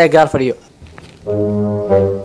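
A low, steady horn-like note, held flat for over a second, starting a little past the middle after a brief bit of speech.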